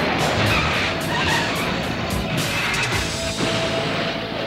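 Cartoon action sound effects: an explosion rumbling into a vehicle crashing and skidding, over dramatic background music. A brief laugh comes at the very start.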